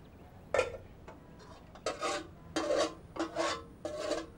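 Metal utensil scraping food out of an enamel cooking pot onto a plate: a sharp clink about half a second in, then several short scrapes with a slight ringing of the pot.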